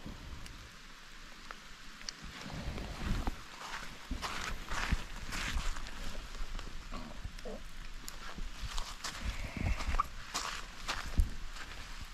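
Irregular scuffing, rustling and soft knocks of footsteps on sandy ground and of handling as a person moves around a small folding e-bike.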